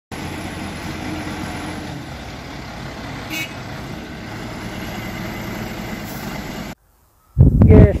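Caterpillar backhoe loader's diesel engine running steadily while it loads sandy soil into a dump truck, with one brief sharp knock about three and a half seconds in. The machine sound cuts off suddenly near the end, and a man starts speaking.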